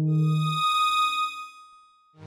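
Software synthesizer notes: a low held tone that stops about half a second in, overlapped by a high, clear ringing tone that fades away over the next second or so.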